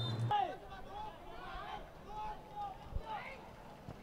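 Faint shouts and calls from players and spectators at a seven-a-side football match, over low crowd murmur. There is a single soft thud about three seconds in.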